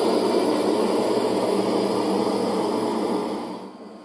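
Trombia Free autonomous electric street sweeper running with a steady whooshing noise of fans and brushes that fades out near the end. It is heard through a computer speaker and re-recorded, so it sounds muffled.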